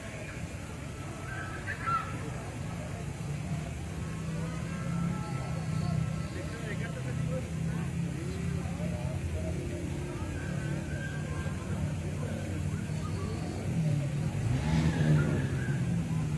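Street background noise: a steady low rumble like traffic, with indistinct voices murmuring through it and getting louder near the end.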